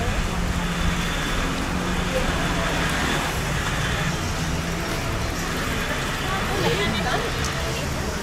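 Car driving slowly along a wet city street: steady engine hum and tyre hiss on the wet road, with faint voices from the street.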